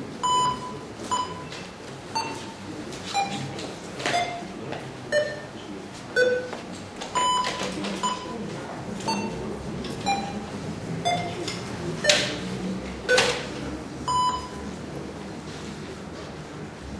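Electronic voting system sounding short beeps about once a second while the vote is open. After two beeps at the same pitch, each beep steps lower than the last over about seven beeps, and then the run starts again at the top. A faint murmur of voices runs beneath.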